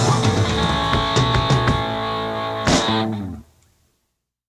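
Surf rock band of electric guitars, bass and drums playing the last bars of a song, ending on a final hit with a cymbal crash about two-thirds of the way through. The closing chord rings briefly and dies away shortly before the end.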